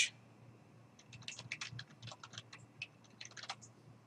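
Computer keyboard typing: a quick, faint run of about twenty keystrokes, starting about a second in and stopping shortly before the end, as a web address is typed.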